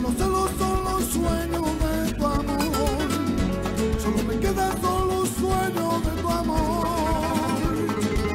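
Catalan rumba played live: a male lead voice singing with vibrato over strummed flamenco guitars.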